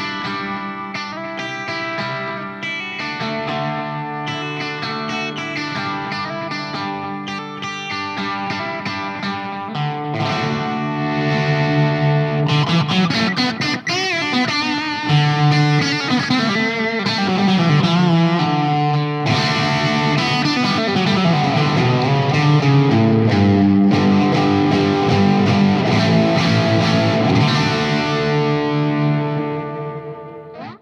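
Electric guitar with some distortion, a Fender Telecaster picked with a Dunlop Herco soft nylon pick. Single notes and chords for about ten seconds, then louder, denser playing with string bends and slides.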